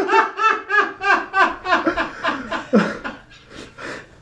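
A young man laughing hard in a quick run of short bursts, about three or four a second, trailing off and going quieter about three seconds in.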